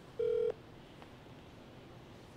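A single short electronic beep from a smartphone on speaker, a steady pitched tone of about a third of a second, as a call is being placed.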